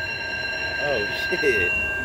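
Slot machine playing an electronic chime: a chord of several high steady tones that starts suddenly and holds for about two seconds before stopping.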